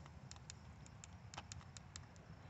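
Near silence, with a run of faint, small clicks at irregular intervals, about ten in two seconds.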